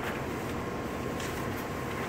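Steady background noise in a room with a faint, even hum, with no distinct events.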